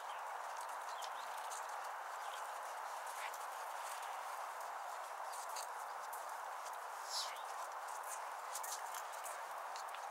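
A horse's hooves at a working trot on sand arena footing: soft, muffled footfalls over a steady background hiss.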